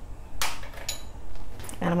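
Light clinks of lab glassware and a utensil being handled on a steel bench: a sharp knock, then a clink with a brief high ring, then a softer tap.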